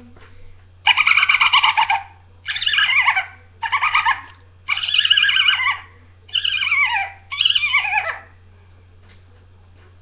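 A girl imitating a dolphin with her voice: six high-pitched chattering squeaks, each about a second or less, the last few sliding down in pitch.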